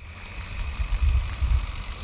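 Night-time brush fire burning along a hillside, heard as a steady low rumble that swells in the middle, with faint steady high-pitched tones above it.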